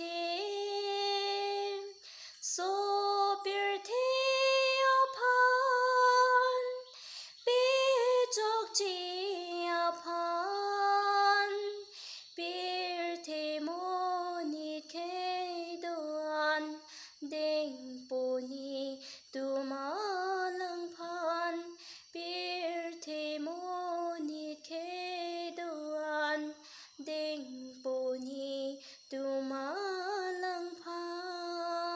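A woman singing solo without accompaniment, a slow melody with long held notes; louder over the first twelve seconds, softer after that.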